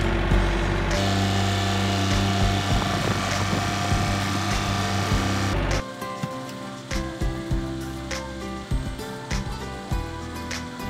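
A tractor engine runs steadily for the first six seconds or so, then cuts off abruptly. Background music with scattered beats follows.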